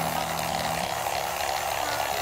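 Corded electric fillet knife motor running steadily, its reciprocating blade scraping the scales off a flounder.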